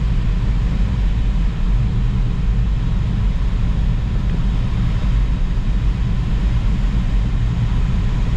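Steady low drone of a light aircraft in flight, its engine and rushing air heard inside the cockpit, unchanging throughout.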